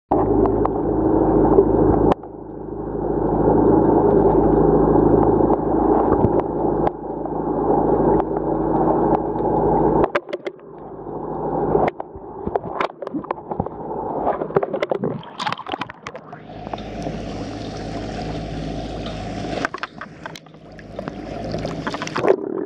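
Underwater, a boat's motor hums steadily, carried through the water as a low drone of several even tones. After about ten seconds it drops away and scattered clicks and crackles follow, with a stretch of water hiss near the end.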